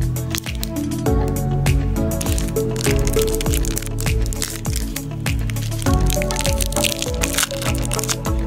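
Background music with a steady beat, a low kick about twice a second under sustained notes.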